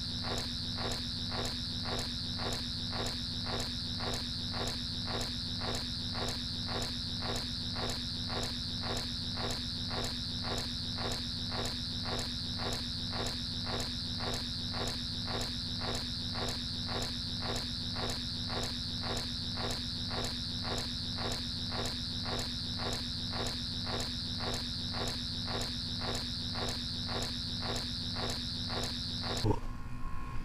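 Sonic screwdriver's high electronic whine, held unbroken and pulsing evenly about two to three times a second, cutting off suddenly near the end.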